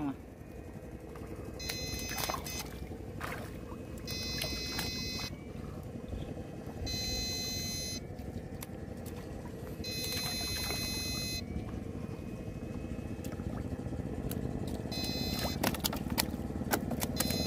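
Homemade electrofishing rig's inverter giving a high electronic whine in five bursts of about a second each, spaced a few seconds apart; each burst is current being switched into the water through the poles. A low steady rumble runs underneath, with a few clicks.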